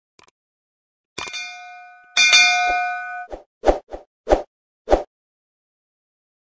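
Subscribe-button animation sound effect: a bell-like ding about a second in, then a louder chime that rings for about a second, followed by five short clicks.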